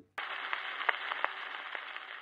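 Surface noise of an Aprelevka Plant 78 rpm shellac gramophone record after the music has ended: a steady hiss with scattered crackles and sharp clicks from the needle in the groove, starting abruptly about a fifth of a second in.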